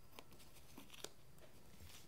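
Near silence with a few faint ticks and scratches of a pen-style X-Acto craft knife cutting through a thin foam sheet, the sharpest about a second in.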